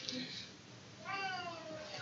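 A single high-pitched, drawn-out call lasting about a second, starting about a second in and falling in pitch.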